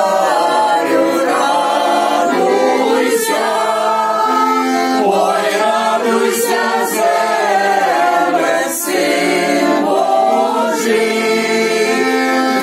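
A group of women singing a shchedrivka, a Ukrainian New Year's Eve carol, in unison, accompanied by a button accordion.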